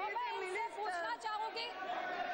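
Speech: a woman speaking, with other voices talking over her.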